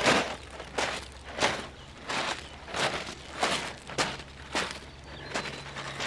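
Footsteps crunching on a pebble and gravel beach at a steady walking pace, about one and a half steps a second.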